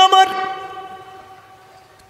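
A man's voice holding one long chanted note at a steady pitch through a stage PA system. It ends about a third of a second in and its ring dies away over about a second and a half.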